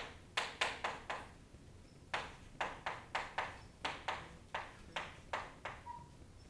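Chalk writing on a chalkboard: a quick, uneven run of sharp taps as the chalk strikes the board. There is a cluster of about four in the first second, a short pause, then a steadier series of about a dozen taps.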